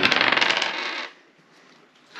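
A small die rolled onto a wooden table, clattering and rattling for about a second before it comes to rest.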